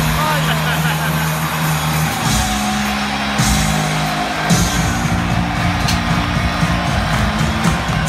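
Loud pre-game arena music over the PA, with sustained bass notes that change every second or so, over a crowd.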